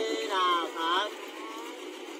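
A voice singing drawn-out notes that slide in pitch during the first second, over a steady background noise.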